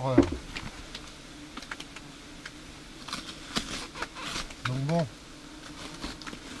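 German wasps (Vespula germanica) buzzing steadily around their disturbed nest. Crackling of foil-faced roof insulation being handled, heaviest from about three to four and a half seconds in.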